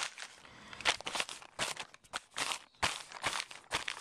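A hand pressing and rubbing over a tar-stained gasifier fuel bag, making the bag material crinkle and rustle in an irregular string of short scratchy crackles.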